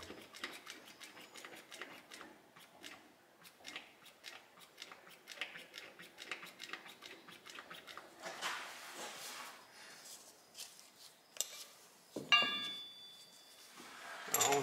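Hand primer plunger on a 12-valve Cummins 5.9 (6BT) fuel lift pump being worked over and over, with faint repeated clicks and a sucking sound as it draws fuel to prime the fuel system. A brief ringing clink near the end.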